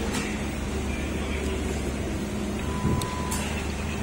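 Steady low rumble of road traffic, with a few sharp clicks and a brief thump about three seconds in.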